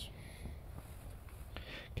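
Faint, steady low rumble of incandescent lava bombs rolling down the flanks of Reventador volcano during an eruption.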